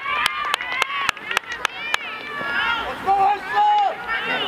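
Several voices shouting and calling over one another on a field hockey pitch, with a quick even run of about eight sharp knocks in the first two seconds and one long held shout near the end.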